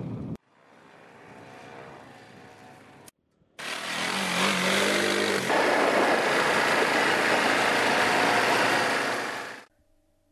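ATV engines running under heavy wind rush on a helmet-mounted camera's microphone. A quieter stretch of engine sound breaks off about three seconds in, then a loud stretch follows in which the engine's pitch rises and falls, ending abruptly shortly before the end.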